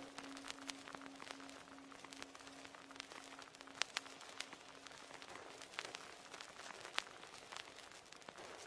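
Faint hiss scattered with sharp clicks and crackles, under a low held tone that slowly fades away over the first several seconds.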